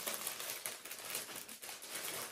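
Faint rustling and light clicks of a small fabric makeup bag and other items being handled on a desk.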